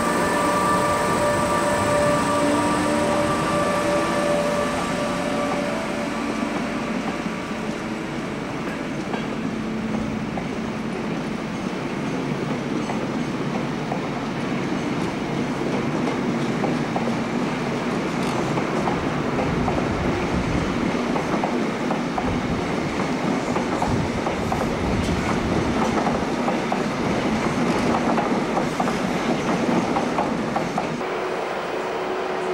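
An electric locomotive passes close by with its motors whining, and the whine fades over the first few seconds. Its train of passenger coaches follows, rolling by with a steady rumble and wheels clattering over the rail joints.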